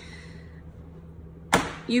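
A metal baking sheet carrying two silicone donut pans of batter dropped onto the counter: one sharp knock about one and a half seconds in, which settles and levels the batter in the pans.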